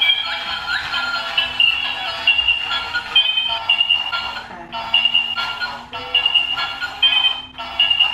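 Battery-powered dolphin bubble gun toy playing its annoying electronic tune, a melody of short high beeping notes, with a steady low hum underneath as it blows bubbles.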